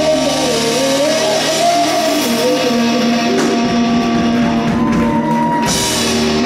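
Live rock band playing electric guitars, bass and drum kit, with long held notes and a cymbal crash near the end.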